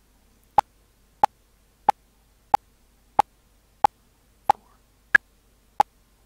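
Audacity Click Track metronome in its 'ping' sound, playing at 92 beats per minute: ten short pings about two-thirds of a second apart. One higher-pitched accented ping about five seconds in marks the first beat of a new eight-beat measure.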